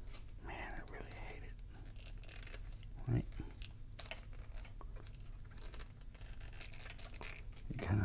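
Faint handling noises of a plastic 1/6 scale action figure's head and head-tails piece being worked in the hands: light scratching and small clicks, with a soft thump about three seconds in and another near the end.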